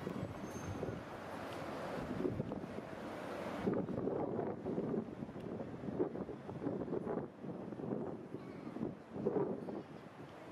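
Road traffic noise from a busy street, a shifting rush of passing cars with wind buffeting the microphone. The higher hiss drops away about four seconds in.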